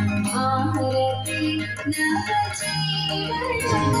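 A woman singing a song over a steady low drone.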